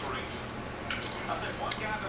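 Faint squishing and light ticks of hands pressing cooked, crumbled sausage into a dough-lined cast-iron skillet, over a steady low hum.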